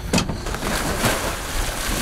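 Scuba divers entering the sea from a boat's side: a knock at the start, then a rush of splashing water over wind noise on the microphone.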